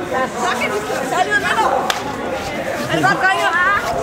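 Overlapping voices of several people chattering on a city street, with a brief sharp click about two seconds in.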